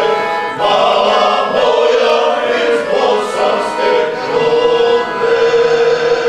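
Male folk vocal group singing together in long held notes, with accordion accompaniment.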